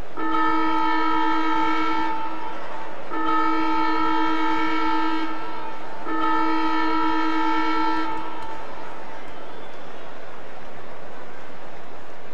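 Ground siren horn sounding three long steady blasts, each about two seconds long with a second's gap between them, a chord of several fixed pitches.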